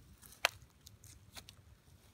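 Faint handling noise of fingers turning a small crusty coin close to the microphone, with one sharp click about half a second in and a few softer ticks after it.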